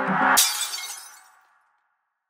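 An instrumental hip-hop beat's last notes, cut off about half a second in by a loud glass-shattering sound effect that dies away to silence within about a second.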